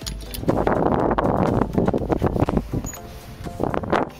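Footsteps knocking irregularly on a wooden plank walkway, with a louder rushing noise for about two seconds near the start.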